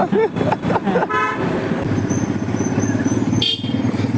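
A road vehicle's horn toots briefly about a second in, with a second short, higher toot near the end, over the steady running of a motor vehicle engine in street traffic.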